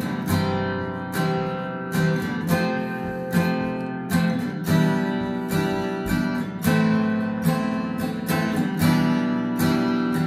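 Acoustic guitar strumming a slow chord progression of C and F with added notes, E minor 7, A minor and G, about two strums a second with each chord left ringing.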